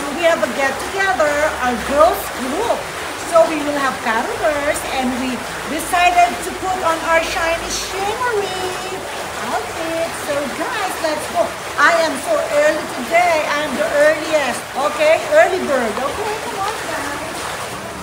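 A woman talking over the steady splashing of an indoor fountain.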